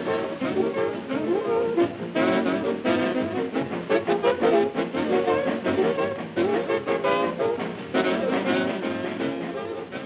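An all-female swing big band playing an up-tempo number, its trombone and trumpet section to the fore, on an old film soundtrack with a thin, narrow sound.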